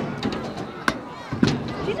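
Skatepark clatter: a few sharp knocks of scooter and bike wheels and decks on a ramp, about half a second apart near the middle, with faint voices behind.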